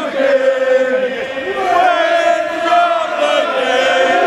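Crowd of Aston Villa football supporters chanting together in song, the voices holding long notes in the second half.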